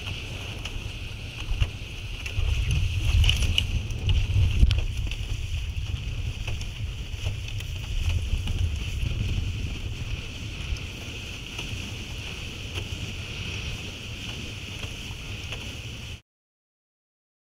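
Wind buffeting the camera microphone over a steady hiss of water rushing past the hulls of a Nacra F18 sailing catamaran under way. The wind rumble is heaviest a few seconds in.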